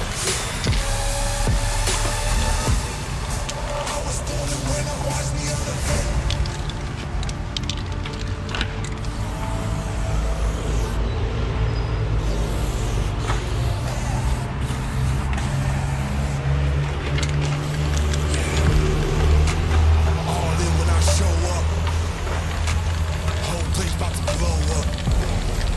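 Hip-hop backing track with a heavy bass line playing over the footage.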